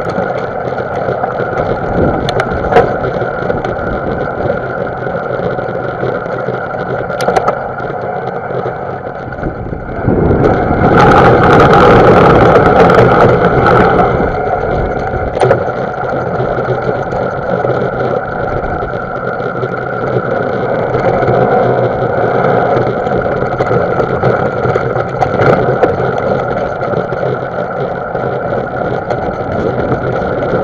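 Mountain bike ridden over a dirt singletrack, heard through the rider's camera: steady wind and riding noise with a few sharp knocks from bumps, loudest for a few seconds about ten seconds in.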